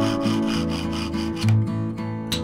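Handsaw cutting a birch board in quick, even strokes that stop about a second and a half in, over acoustic guitar music.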